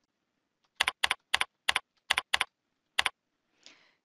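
Computer keyboard keystrokes typing a number into a form field: about seven separate key clicks at an uneven pace over a couple of seconds.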